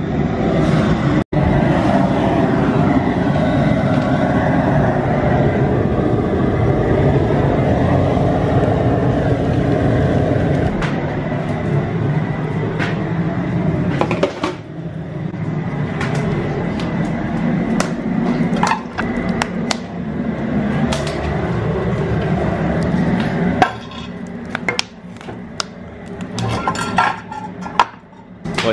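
Propane burner running with a steady rushing noise under a pot of maple sap close to a rolling boil. About halfway through it gives way to scattered clinks and knocks of metal being handled, from stainless pans and the door of an enamel wood cook stove.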